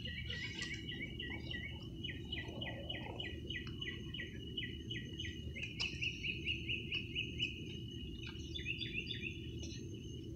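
A bird chirping rapidly and without pause, several short sliding chirps a second, louder for a stretch about six to seven seconds in, over a steady low background rumble.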